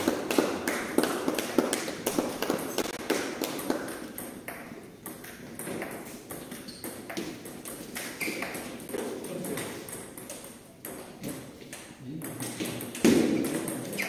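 Table tennis balls clicking off tables and bats in irregular runs, with voices murmuring in the background and a louder burst of sound near the end.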